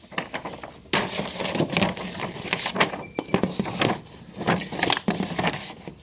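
Paper rustling and crackling as a large thread-chart booklet is picked up and its pages are flipped open, in a run of irregular crinkles and small clatters.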